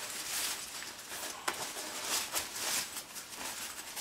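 Fabric gear bag rustling and scraping as hands open it and rummage at its top, with a few small sharp clicks of handling.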